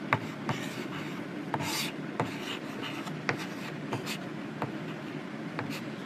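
Chalk writing on a chalkboard: a string of sharp, irregular taps of the chalk striking the board, with a short scratchy stroke about one and a half seconds in.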